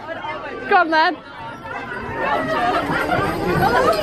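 Excited voices: a high exclamation about a second in, then several people talking and laughing over one another.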